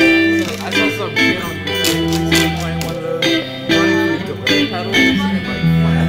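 Guitar played live: plucked notes and chords struck every half second or so, ringing over held low notes.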